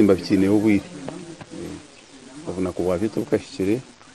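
A man's voice speaking in two short stretches, separated by a pause of about a second and a half.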